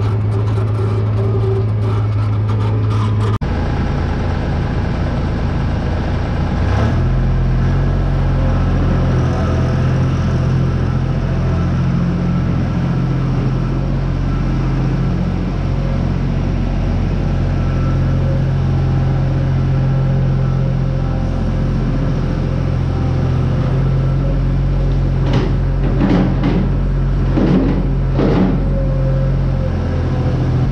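Farmall 656 tractor engine running steadily with a manure spreader hitched. A second engine, a John Deere skid steer, joins in about seven seconds in. Near the end come a few knocks and clatter as the skid steer's bucket dumps manure into the spreader.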